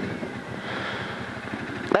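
Rally car's engine idling steadily, heard from inside the car.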